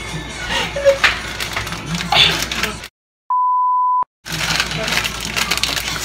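A single steady beep tone near 1 kHz, lasting under a second, edited into the soundtrack between two abrupt cuts to dead silence about halfway through. Around it, background household noise with scattered voices.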